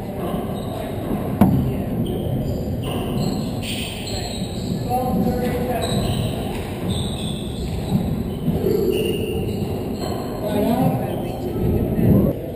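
A handball rally on a hardwood court that echoes. A sharp crack of the ball strike comes about one and a half seconds in, then shoe squeaks and footsteps on the floor.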